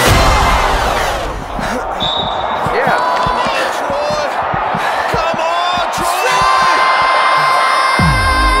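Basketball game in a gym: a basketball dribbled repeatedly on a hardwood court, with spectators' voices and cheers around it. Background music comes back in near the end.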